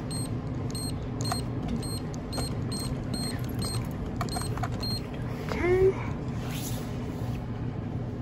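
A series of short, high electronic beeps, about two to three a second, stopping about five seconds in, typical of checkout equipment. A steady store hum runs underneath, and a brief voice sound comes just before six seconds.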